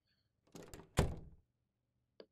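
A door being shut: a short, soft noise about half a second in, then a single thunk as it closes about a second in, ringing away briefly.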